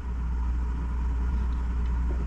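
A steady low rumble with a faint steady tone above it, nothing sudden standing out.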